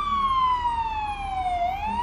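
Fire engine siren on a slow wail: one tone sweeping down in pitch, bottoming out about one and a half seconds in, then starting to climb again.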